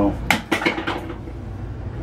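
A quick run of four or five sharp clicks and clatters in the first second, from the toilet's plastic side cover being handled, then quiet handling noise.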